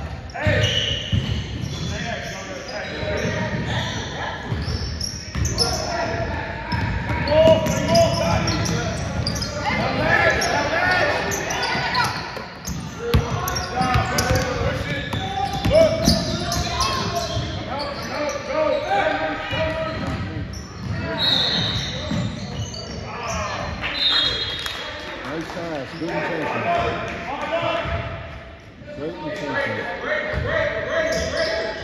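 A basketball being dribbled and bouncing on a hardwood gym floor, with indistinct voices and shouts from players and spectators echoing through a large gym.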